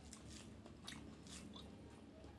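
Faint eating sounds: a few short, wet clicks of a person chewing a mouthful of rice and mutton curry.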